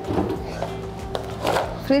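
Background music, with a metal spatula scraping twice across a steel flat-top griddle as a burrito is turned on it, and a sharp click near the middle.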